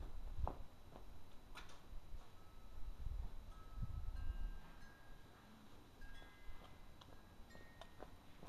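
Faint, steady chime-like ringing: a few high tones of about a second each, stepping up in pitch, over a low rumble.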